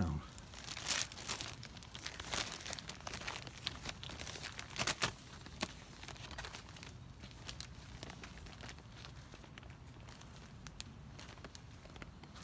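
Plastic carrier bag crinkling and rustling as it is handled, with several sharp clicks in the first half, then only a faint rustle.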